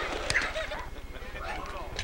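Children's voices, short and fairly faint, over a steady low hum, with one sharp knock about a third of a second in.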